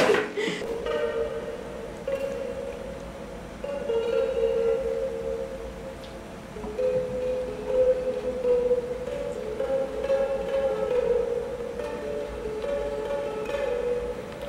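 A slow, quiet melody of long held notes that step from pitch to pitch every second or few.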